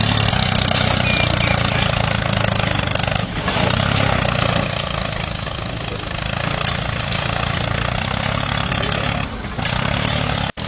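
Tractor engine sound running steadily at a low, even idle.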